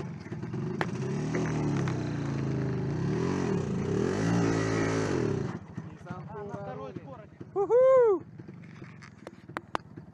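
Motorcycle-with-sidecar engine revving up and down several times under load as the bike is worked off a log bridge, cutting off abruptly about five and a half seconds in. A quieter stretch follows, with a short loud rising-and-falling call near the end and a few sharp clicks.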